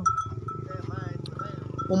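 A water buffalo lowing: one low, drawn-out call lasting most of two seconds.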